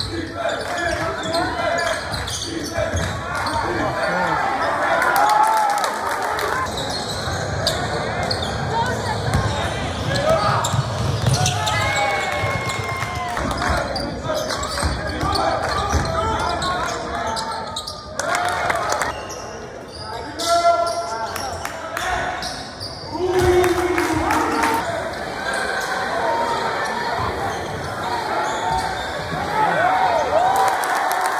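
Live courtside sound of high school basketball in a large gym: the ball bouncing on the hardwood court, with indistinct voices of spectators and players throughout.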